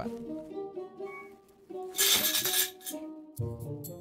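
Light plucked-guitar background music, cut about two seconds in by a loud burst of noise lasting about half a second: the 12-volt motor of a home-built Arduino Nano robot shaking on its half-second timed run after being triggered by remote.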